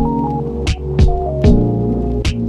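Background music: sustained chords and a short stepping melody over a steady low bass, punctuated by sharp percussive hits.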